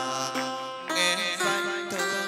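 Chầu văn ritual music from a live band led by a đàn nguyệt (moon lute): plucked notes with sliding pitch bends over a steady ensemble.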